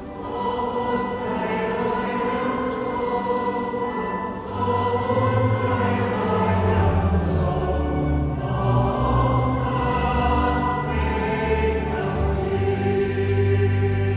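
A choir singing in a large church, with deep sustained bass notes joining about four and a half seconds in, after which the music is louder.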